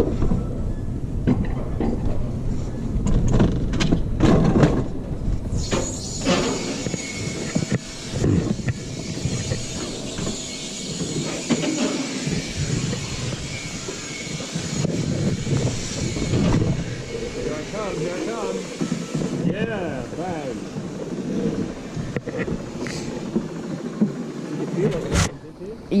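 Alpine coaster sled running along its metal rail, a low rumble with a clatter of clicks for the first few seconds, then a steady hiss for about ten seconds. Voices or music carry faintly over the rumble in the second half.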